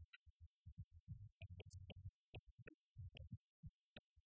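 Faint, short low bass notes in an uneven, choppy pattern, with a few sharp clicks between them.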